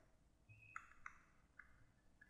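Near silence, with faint short scratches of a stylus writing on a drawing tablet, about half a second in and again just after a second.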